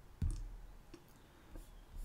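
Computer mouse clicks while choosing an item from an on-screen menu: one sharp click just after the start, then a few fainter ticks.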